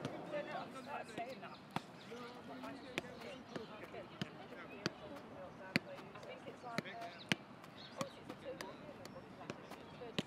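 A football being touched and struck repeatedly on an outdoor grass pitch: sharp, separate thuds roughly one to two a second at uneven intervals.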